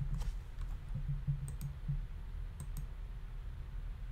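A few scattered, sharp clicks of a computer keyboard and mouse, over a steady low hum.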